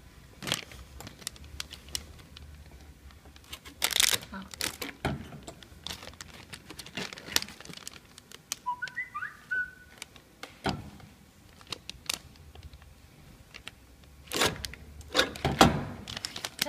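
Hand work on a packing machine's cutter blades: irregular metal clicks and knocks, with crinkling of the foil bag film. The loudest bursts come about four seconds in and near the end, and a brief high squeak sounds about nine seconds in.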